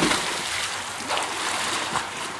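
A child jumping into a backyard pool: a splash at the start, then water churning and sloshing around her as she surfaces.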